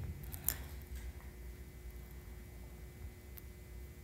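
Silicone spatula stirring thick blended bean batter in a plastic bowl, faintly, with a sharp click about half a second in and a light tick near the end.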